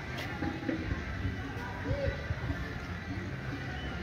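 Outdoor ambience: a steady low rumble of background noise with faint, indistinct distant voices.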